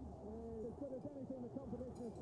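Faint, continuous cooing of birds, many short coos overlapping one another.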